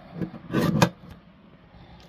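Guillotine paper cutter blade cutting through 150 gsm card: a short stroke about a quarter second in, then a longer, louder cut ending near the one-second mark.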